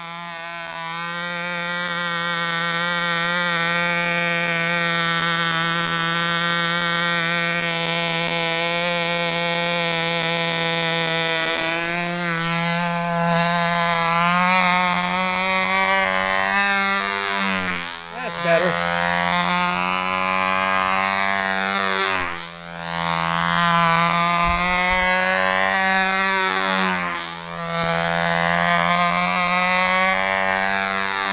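OS MAX-S .35 two-stroke glow engine on a control-line stunt plane running at full throttle with its mixture leaned out after an overly rich first run: a steady high-pitched buzz. It fades in at the start, and in the second half its pitch and loudness dip briefly and recover several times as the plane flies its laps and manoeuvres.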